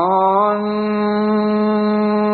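A voice chanting a Sanskrit prayer: its pitch wavers for a moment, then it holds one long steady note.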